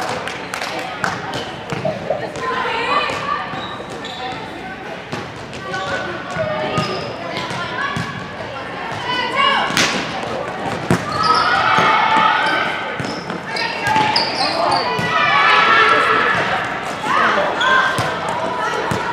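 Volleyball game in a large gym: volleyballs smacked and bouncing on the court floor, with one sharp hit about ten seconds in, under high-pitched girls' voices calling out and chattering around the hall.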